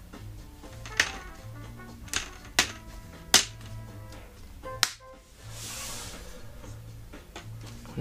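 Plastic laptop screen bezel clips snapping into place as it is pressed onto the display lid: about five sharp clicks spread over the first five seconds, followed by a brief soft rustle. Background music plays throughout.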